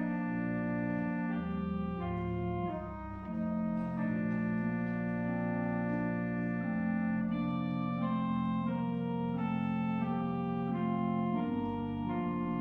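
Church organ playing slow, sustained chords that change every second or so, with a brief softening about three seconds in.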